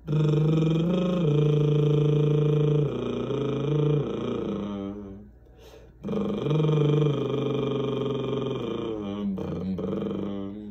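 A man humming long held notes that step between a few low pitches, in two phrases with a short breath between them a little after five seconds in.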